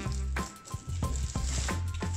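Clear plastic wrapping crinkling as it is pulled off a hand coffee grinder, over background music with a steady bass line.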